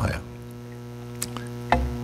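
Steady electrical mains hum, with a faint click a little past a second in and a soft low thump near the end.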